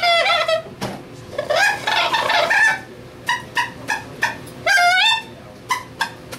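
A small mouth-blown instrument cupped in both hands plays improvised notes that bend up and down in pitch. A wavering phrase about two seconds in gives way to a run of short, clipped notes, with another bent phrase near the end.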